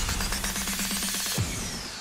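Cartoon theme music ending: rapid percussion over a held low note, a final hit about a second and a half in, then fading out with a high falling tone.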